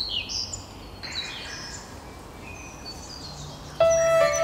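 Small birds chirping: a quick run of high, short descending chirps in the first second or two, then a few fainter thin whistles. Music comes in suddenly just before the end.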